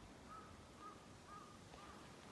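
Faint crow cawing: a run of short calls, about two a second, beginning just after the start.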